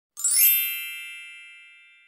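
A sparkling chime sound effect: a quick upward shimmer just after the start, then a bright ringing chord that fades away over about two seconds.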